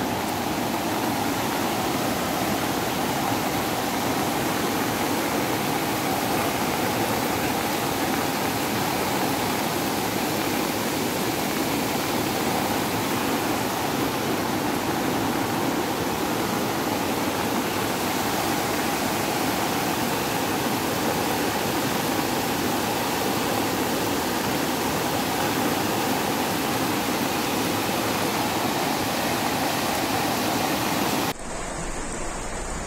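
Floodwater rushing steadily past, a continuous even noise without breaks.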